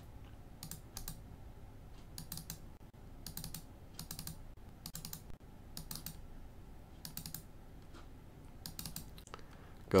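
Computer mouse button double-clicking, faint, a pair of sharp clicks roughly every second or so, about eight times.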